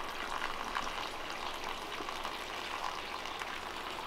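Rainwater from a barrel running by gravity through a perforated white PVC watering pipe and spilling from its holes onto potting soil in a row of pots: a steady hiss.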